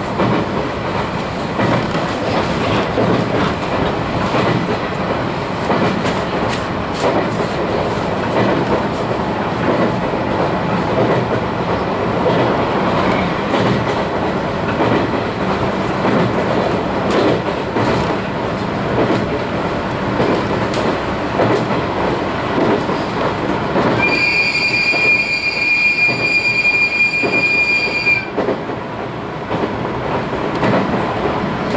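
Running noise of a JR 719 series electric train car at speed, with wheels clacking over rail joints. About twenty-four seconds in, a steady high-pitched wheel squeal lasts about four seconds, then stops.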